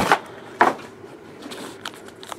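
Foil trading-card packs being handled: one short rustle about half a second in, then faint handling with a light click near the end.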